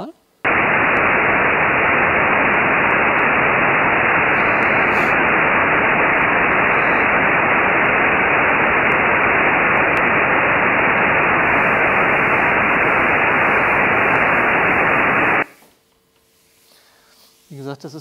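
Demonstration noise, an even hiss, plays loudly for about fifteen seconds and then cuts off abruptly. It is noise with one single frequency left out, played to produce a brief phantom tone that a listener seems to hear just as the noise stops.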